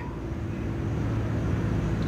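Steady background hiss with a faint low hum, in a gap between phrases of a man's speech.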